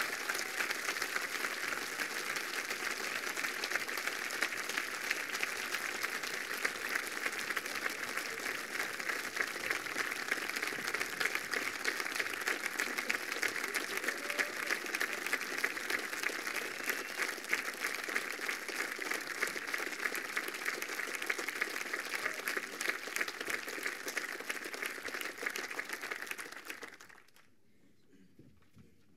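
Audience applauding, a steady, dense clapping that holds for nearly half a minute and dies away quickly near the end.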